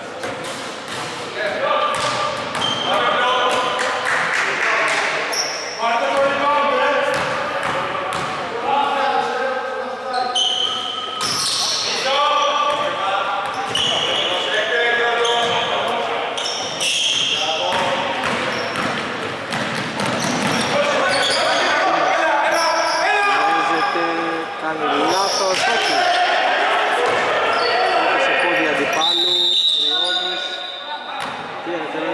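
Voices calling out across a large, echoing gym while a basketball bounces on the wooden court during play.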